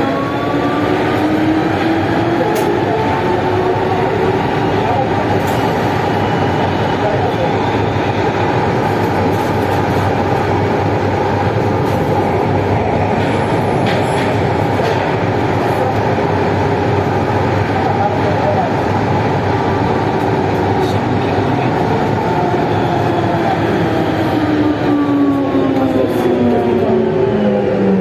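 Siemens VAL 208 NG rubber-tyred automated metro running through a tunnel, with loud steady rolling noise. Its traction motor whine rises in pitch as it picks up speed at the start, holds steady, then falls away as the train brakes into a station near the end.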